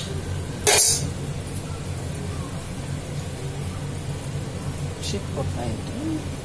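Low steady hum of a gas stove burner under a boiling pot of pulusu, with one short burst of noise about a second in.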